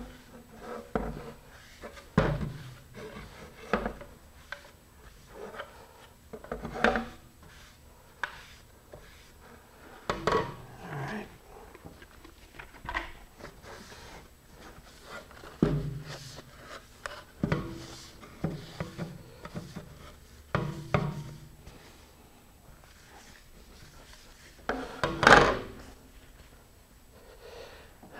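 Damp paper towel rubbing over a fiberglass rocket airframe and its fins to wipe off sanding dust. Scattered soft knocks come as the tube is moved about on the table, with one sharper knock near the end.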